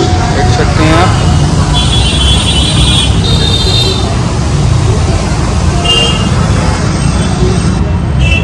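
Busy city road traffic: a steady low rumble of passing vehicles, with horns honking between about two and four seconds in and once more briefly near six seconds.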